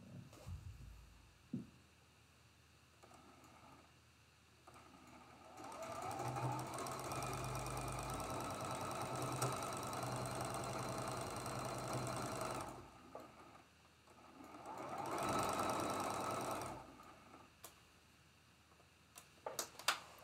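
Electric sewing machine stitching a quilt seam: after a few light handling clicks it speeds up into one steady run of about seven seconds, stops, then gives a second, shorter burst that rises in pitch.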